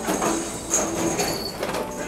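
A thin stream of tap water running from a faucet into a stainless steel sink, a steady hiss.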